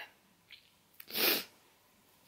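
One short, breathy burst of air through the nose from a woman with a cold, about a second in, preceded by a faint click.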